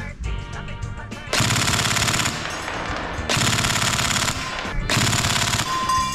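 Tokyo Marui next-generation electric MP5SD6 airsoft gun firing three bursts of full-auto fire, each about a second long, its recoil-engine bolt weight cycling with every shot. The last burst ends as the magazine runs empty and the auto-stop halts firing.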